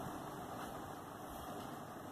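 Steady faint room noise: a low hum and hiss with no distinct events.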